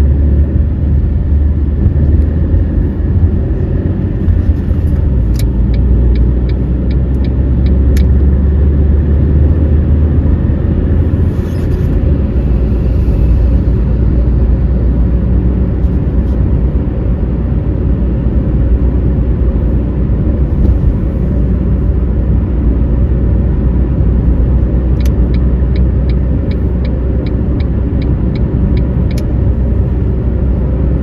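Car cabin noise while driving: a steady low rumble of engine and tyres on the road. Twice, once a few seconds in and again near the end, a run of quick, even clicks at about three a second comes from the turn signal.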